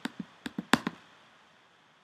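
About five quick computer mouse clicks within the first second.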